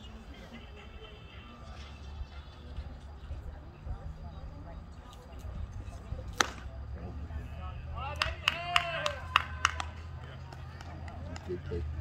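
A single sharp pop about six seconds in, typical of a pitched baseball smacking into the catcher's mitt, over a steady low rumble. A couple of seconds later there is a quick run of clicks mixed with short pitched calls.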